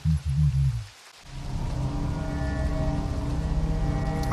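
Dark ambient background music: a low bass swell fades away about a second in, then a held, eerie drone of several steady tones over a low rumble builds back up.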